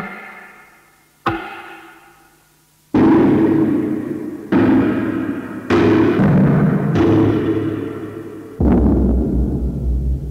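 Electroacoustic tape music: six sudden struck, resonant attacks, each ringing and slowly fading, the first alone and the rest coming every second or so from about three seconds in. Near the end a deep steady rumble joins under the last attack.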